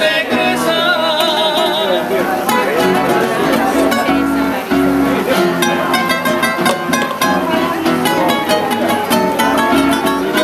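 A bolero guitar trio playing. Voices hold the end of a sung line with vibrato for the first two seconds, then the guitars carry an instrumental interlude: a rapid plucked lead melody over the rhythm guitars.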